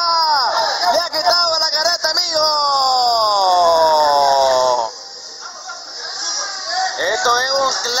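Men's voices shouting. About two seconds in, one man lets out a long cry that falls in pitch over two and a half seconds. Then it goes quieter until voices pick up again near the end, all over a steady high hiss.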